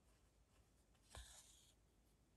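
Near silence, broken about a second in by one short, soft hiss of embroidery thread being drawn through layered fabric.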